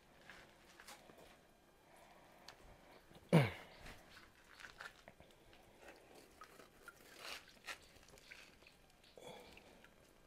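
Faint handling noise of a mesh net and its wooden frame being worked in shallow pond water: scattered small clicks, rustles and light splashes. A single spoken word about three seconds in is the loudest sound.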